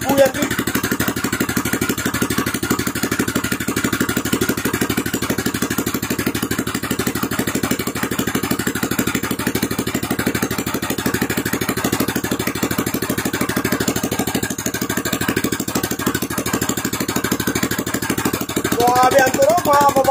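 Robin EY28D 7.5 hp single-cylinder four-stroke engine running at a steady idle, its even firing pulses unchanging. A voice comes in near the end.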